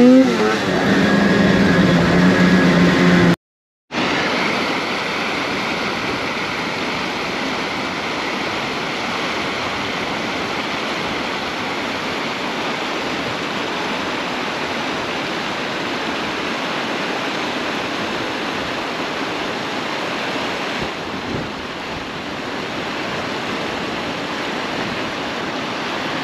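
Snowmobile engine revving, its pitch rising, for about three seconds before cutting off abruptly. After that comes a steady rushing noise of the sled riding over snow, mostly wind on the camera's microphone.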